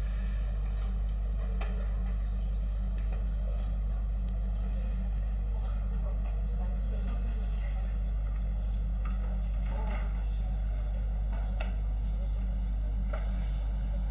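Steady low hum with faint room noise and a few small clicks; no speech.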